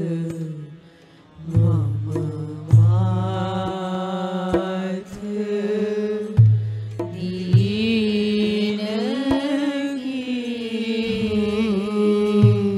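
Devotional bhajan sung to instrumental accompaniment with percussion strikes. The voice holds long notes that bend in pitch, and there is a brief lull about a second in.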